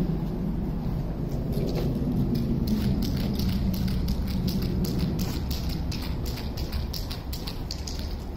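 Outdoor street noise: a steady low rumble whose pitch sinks slightly a couple of seconds in, with a dense scatter of short clicks from about a third of the way through.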